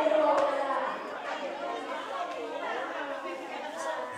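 Overlapping chatter of a group of people talking at once, a little louder in the first second.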